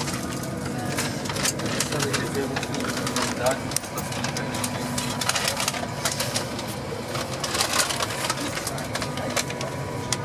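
Indistinct voices of other passengers in a train carriage, with frequent clicks and rustles from the camera being handled and a faint steady tone.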